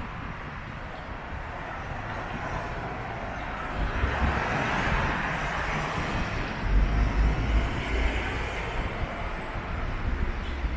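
Street traffic: a vehicle passing on the road, its tyre and engine noise swelling to a peak about halfway through and then easing off. Low rumbles come and go in the second half.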